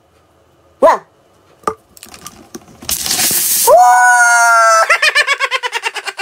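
Soda foaming up out of a bottle with a loud fizzing hiss about three seconds in. The hiss is followed by a long, steady, high squeal that breaks into a rapid fluttering, about ten pulses a second, near the end.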